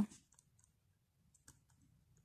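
Faint scratching and a few light clicks of a pencil writing on a paper workbook page.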